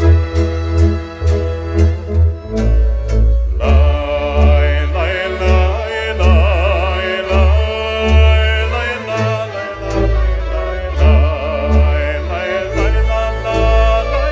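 Romanian folk song from Transylvania performed by a male singer with a traditional folk orchestra of violins, accordion and double bass. The band plays alone at first, then the voice comes in with a wide vibrato about three and a half seconds in, over a steady bass beat.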